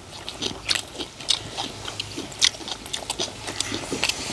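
Close-miked eating sounds: people chewing mouthfuls of egg fried rice, mixed with the clicks and scrapes of spoons digging rice out of a wide metal pan.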